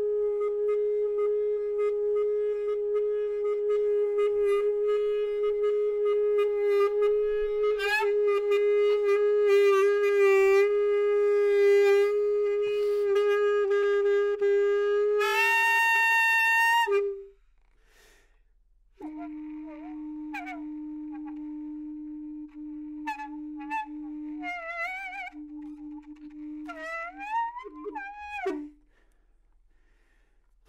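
A 180 cm saxoschlauch, a saxophone mouthpiece on a length of hose, holds one long note with shifting overtones. The note turns brighter just before it stops about 17 seconds in. After a two-second pause a lower held note sounds, its upper partials sliding up and down, and it stops shortly before the end.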